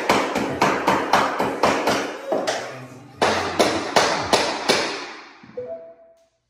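Mallet tapping wood-look floor planks to seat and lock them together: quick strikes at about four a second, in two runs with a short pause about halfway.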